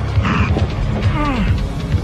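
Sci-fi film soundtrack: music over a steady low bass, with a run of mechanical clicking and ratcheting effects and a pitched sound that glides downward about a second in.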